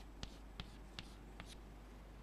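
Chalk tapping on a blackboard as short tick marks are struck along a line to divide it into equal intervals. It comes as about five faint, sharp clicks in the first second and a half.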